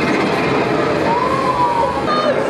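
Loud soundtrack of a 4D cinema film, a dense wash of sound with a single high tone that rises and then holds in the second half.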